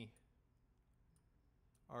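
A few faint, short computer mouse clicks over near silence.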